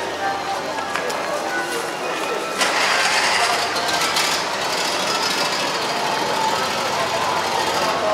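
Indistinct background voices of a crowd milling around a machinery show, with no clear words. About two and a half seconds in, a louder steady hiss-like noise joins for a couple of seconds.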